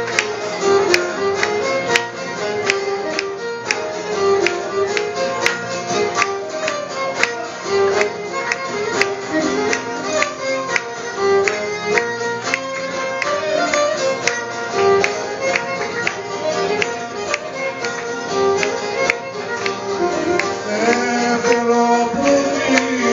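Live Greek folk dance music in the seven-beat kalamatianos rhythm: a violin leads the tune over a plucked laouto, with no singing. Hands clap steadily along to the beat.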